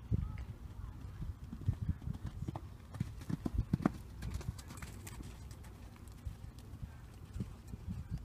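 Hoofbeats of a horse cantering on sand arena footing, a run of irregular low thuds that are loudest a few seconds in as the horse passes close by.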